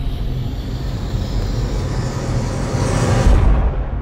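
A logo-intro whoosh sound effect: a rushing noise that swells and rises in pitch, peaks just before the end and cuts off suddenly, over a low music bed.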